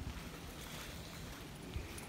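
Steady low rumble of wind on the phone's microphone, with a faint outdoor hiss.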